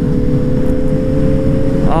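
Suzuki GSR600 inline-four motorcycle engine running at a steady road speed, its note rising slightly, under heavy wind noise on the microphone.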